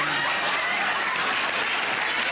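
Studio audience laughing and applauding, a steady wash of crowd noise with no speech over it.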